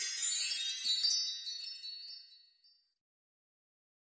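A high, tinkling magical chime sound effect of many small bell-like tones, fading away about two and a half seconds in.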